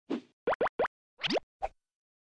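Synthesized cartoon pop sound effects from an animated intro: six short pops in quick succession, most of them quick upward sweeps in pitch.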